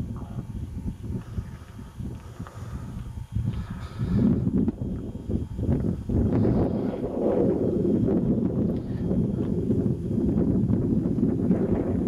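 Low rumbling wind noise buffeting the microphone in the open air. It grows louder about four seconds in and stays uneven.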